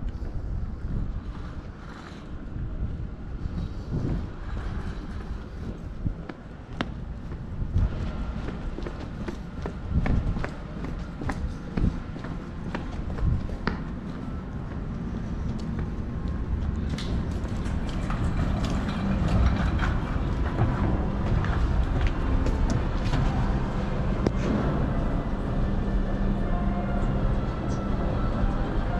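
Footsteps of a person walking, with irregular clicks and knocks over a background of outdoor and car-park noise. A steadier low hum builds up in the second half.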